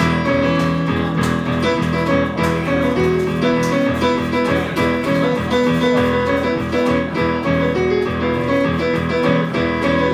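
Live song played on piano: an instrumental passage with no singing, held chords and a steady rhythm, with a strummed guitar-like sound in the accompaniment.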